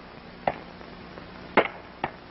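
Axe blows into timber, two sharp strokes about a second apart.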